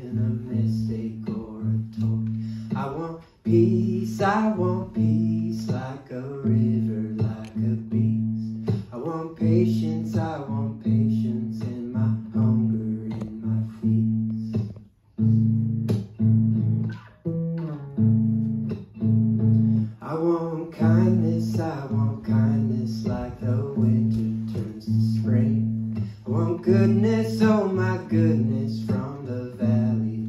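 Acoustic guitar played steadily under a man's singing voice: a solo folk song performed live. The playing drops away briefly twice, about three seconds in and again halfway through.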